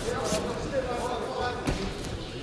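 Several voices calling out at once in a large sports hall, over the hall's general hubbub, with a sharp thud about a second and a half in.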